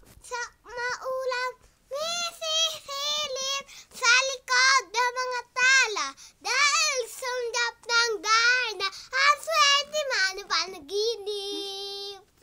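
A young boy singing unaccompanied in a high voice, in short phrases with brief breaths between them. He ends on a longer, lower held note.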